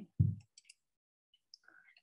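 A short low thump about a quarter second in, then a few faint quick clicks, typical of a computer mouse or keyboard as a presentation slide is advanced.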